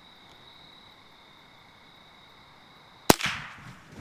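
A single .22 rimfire shot from a Ruger 10/22 rifle about three seconds in: one sharp crack with a short tail after it.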